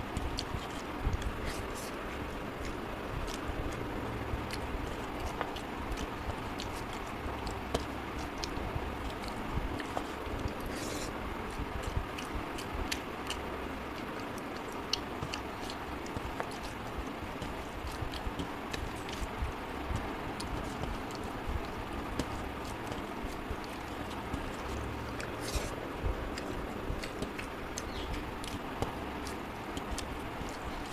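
Fingers mixing rice and fish curry on a metal plate, with scattered small clicks against the plate and soft eating sounds.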